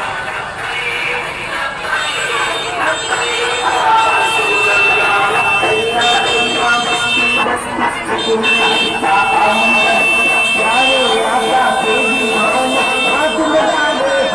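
A voice with music, loud and amplified through horn loudspeakers mounted on a truck, over a crowd. A thin, steady high tone comes in about four seconds in and cuts out and returns a few times.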